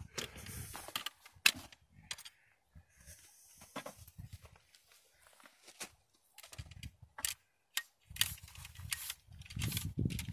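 Ramrod pushing a tight-fitting patched ball down a muzzle-loading rifle's barrel: scattered scrapes and taps with a sharp knock about a second and a half in and two more near the seventh second, and air pushing out of the bore.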